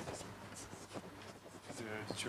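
Chalk writing on a blackboard: a run of short scratches and taps as letters are written.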